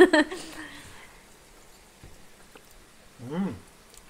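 Mostly quiet, with a short hummed "mm" from someone tasting food about three seconds in.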